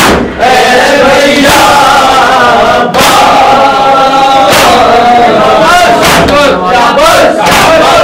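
A crowd of men chanting a Muharram noha loudly in unison. Sharp slaps of hands beating on chests (matam) cut through the chant every second or so.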